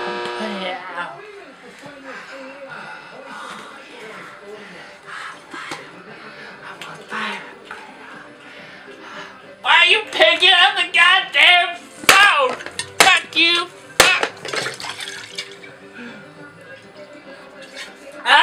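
A voice wobbling up and down in pitch, loud, from about ten seconds in, with a few sharp clicks among it; before that a quieter buzzing and hum.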